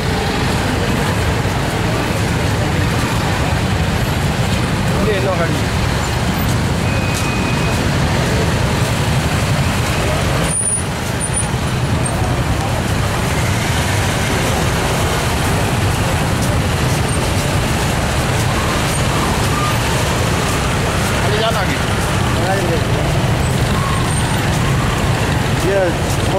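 Motorcycle and traffic engines running alongside the voices of a large crowd on foot, together making a loud, steady din.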